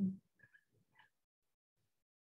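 The tail of a woman's word, then near silence broken by three faint, very brief sounds about half a second and a second in.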